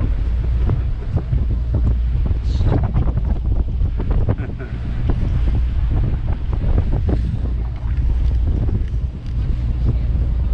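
Wind buffeting the microphone on the open deck of a moving ferry, with frequent crackles, over a steady low rumble of the boat's engine and rushing water from its wake.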